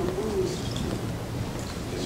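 A voice trailing off in a low, drawn-out hum during the first half second, then the steady hum and murmur of a large room.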